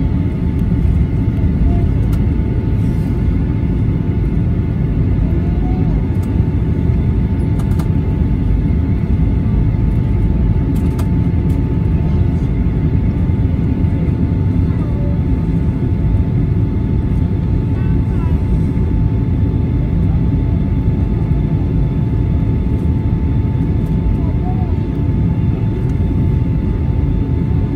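Jet airliner cabin noise while taxiing: a steady engine rumble with a steady whine running through it, heard from a window seat over the wing.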